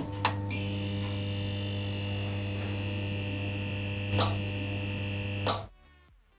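Neon-sign sound effect: a steady electrical hum with a higher buzz joining about half a second in, broken by sharp crackling clicks of flicker near the start, just past four seconds and once more before it cuts off abruptly near the end.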